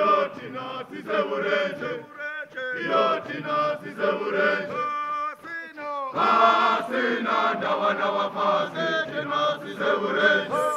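A group of men chanting together in song, with several voices overlapping on held notes. It grows louder about six seconds in.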